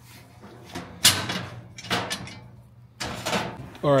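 Sheet-steel parts of a metal filing cabinet knocking and clanking as a crossbar is fitted into the frame: one sharp clank about a second in, then a few lighter knocks.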